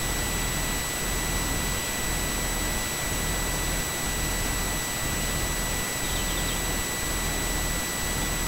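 Wind buffeting a camera microphone: a steady hiss with an uneven low rumble, over a faint steady high-pitched whine.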